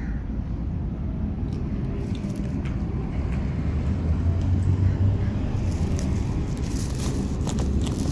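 Steady low background rumble, joined from about five and a half seconds in by close rustling and crackling of cloth and handling as a kitten is gathered against the clothing near the phone.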